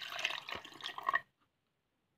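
Water being poured from a glass into a plastic blender jar onto dry rolled oats, stopping abruptly just over a second in.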